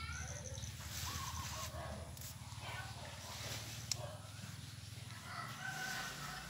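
A rooster crowing, with one call about a second in and a longer, held call near the end, over a steady low hum.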